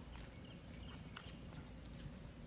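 Faint footsteps on grass and a phone being handled, over a steady low rumble, with a few light clicks.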